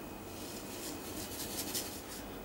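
Gelatin powder pouring from a paper sachet into a saucepan of water: a faint, soft rustle and patter of granules and paper, with a few light ticks in the second half.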